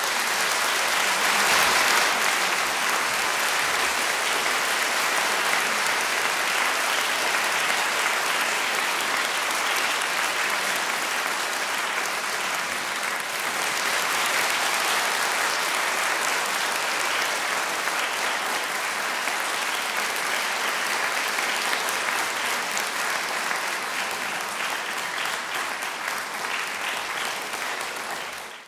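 Audience applauding in a concert hall: dense, steady clapping that is loudest about two seconds in.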